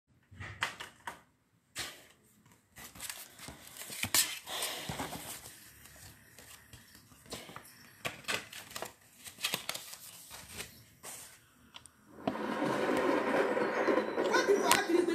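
Handling noise close to the microphone: scattered clicks, knocks and rustles as hands fiddle with something. About twelve seconds in, a louder stretch of voices begins and carries on.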